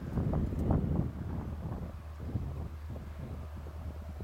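Wind buffeting the microphone: a low rumble with gusts, strongest in the first second.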